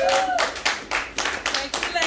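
A small group clapping unevenly, with voices calling out over it near the start and near the end.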